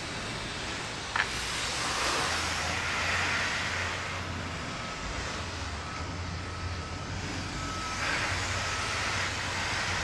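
Garden hose spraying water over a car's bodywork during a rinse: a steady hiss of spray and splashing that swells louder twice. There is a single sharp click about a second in.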